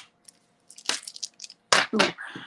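Jewelry being handled, with beads and metal pieces giving a few light clicks and ticks, then a louder clatter near the end.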